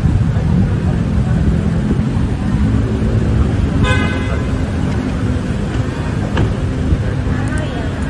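Traffic and idling cars in a street with people talking around them, and a short car horn toot about four seconds in.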